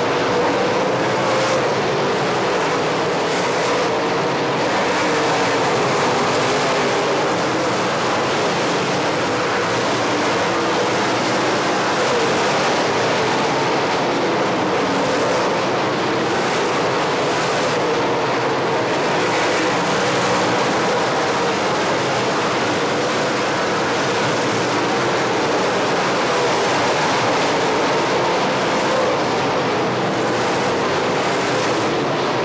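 Several dirt late model race cars' V8 engines running together on a dirt oval, a steady loud din whose pitch slowly rises and falls.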